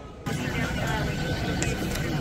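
Airliner cabin during boarding: a steady cabin hum with passengers chattering, starting abruptly just after the start.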